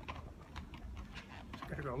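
Inline skates with hard 85A wheels rolling on asphalt: a low steady rumble with light scattered clicks, a few each second.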